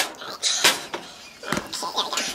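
Kitchen utensils knocking and scraping against a saucepan: a sharp click at the start, then a few short scrapes and knocks.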